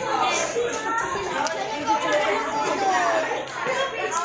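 Young people talking among themselves, several voices in conversation with no other sound standing out.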